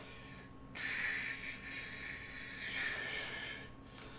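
A man's long, soft breath out, a hissing exhale against hands held to his mouth. It starts about a second in and fades out near the end.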